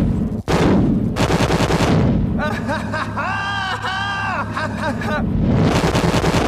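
Loud explosion blasts edited together: one hits at the very start, a second comes about half a second in and carries on as a sustained blast. A warbling pitched tone rides over the middle, from about two to five seconds in.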